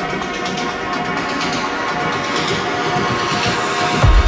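Techno DJ mix in a breakdown: sustained synth chords with no kick drum or bass, and a noise sweep rising through the second half and building toward the drop. The kick and bass come back in right at the end.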